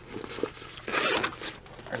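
Fabric of a bat bag rustling as hands handle and fold its flap, with a short rasp about a second in.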